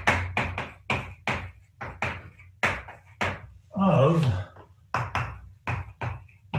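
Chalk on a blackboard during handwriting: an uneven run of short, sharp taps and scrapes as each letter is struck, with brief gaps between words.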